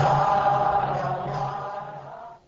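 Devotional mantra chanting with long, held voices over a low pulsing drone, fading out steadily.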